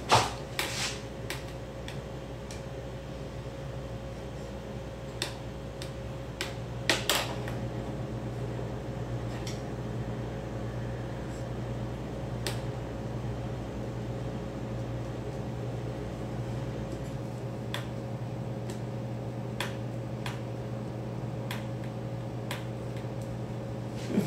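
A steady mechanical hum like a running fan, whose deepest layer drops out about two-thirds of the way through. Scattered light clicks and knocks sound over it, a few louder ones near the start and about seven seconds in.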